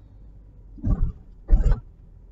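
Two short, loud throaty vocal bursts from a person, about half a second apart, over a low steady car-cabin rumble.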